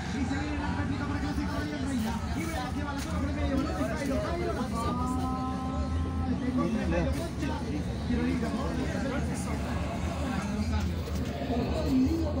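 Inside a moving city bus: the engine's low steady rumble and road noise, with a voice talking over it throughout. A held steady tone sounds for about a second and a half near the middle.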